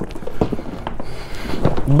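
Deflated Aquaglide Blackfoot Angler 160 inflatable kayak being folded and pressed down by hand. Its heavy fabric rustles and scrapes, with a few soft knocks.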